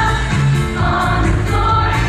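A girls' show choir singing together over instrumental accompaniment with a steady low bass line.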